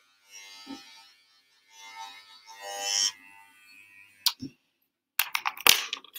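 Electric hair clippers buzzing faintly in short spells, then a run of sharp clicks and knocks near the end.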